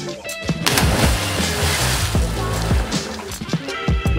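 A person jumping from a rock ledge into a lake: a splash of water hits about a second in and fades over the next two seconds, over background music.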